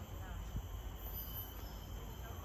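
Rainforest insects droning steadily at a high pitch, over a low rumble.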